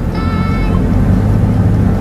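Steady low rumble of a car's engine and road noise heard from inside the cabin, with a brief high ringing tone in the first second.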